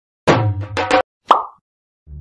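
A short burst of music with several quick hits, cut off abruptly just after a second in, then a single quick 'plop' sound effect that dies away fast.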